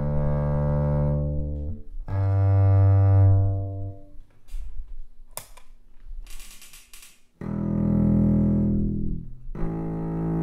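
Double bass bowed arco through a piezo pickup and bass amplification, playing long sustained low notes: two notes of a second or two each, a quieter gap of about three seconds with a sharp click in the middle, then two more sustained notes. The first notes come through the Gallien-Krueger Neo 112 cabinet, the later ones through the Acoustic Image DoubleShot after the A/B box switches over.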